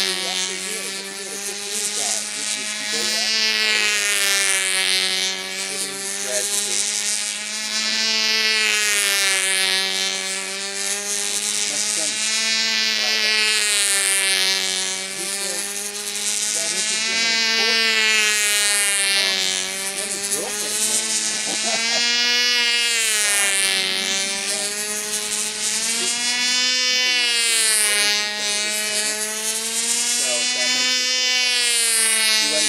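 Small two-stroke glow engine of a control-line Brodak Ringmaster model plane running at full throttle in flight, its high buzzing note rising and falling in pitch and loudness about every four to five seconds as the plane circles the pilot on its lines.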